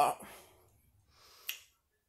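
The tail of a spoken word, then a single short, sharp click about one and a half seconds in.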